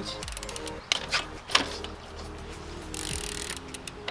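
Background music over the rapid clicking of a mountain bike's rear freehub as the bike coasts, with a couple of sharp knocks about one to one and a half seconds in.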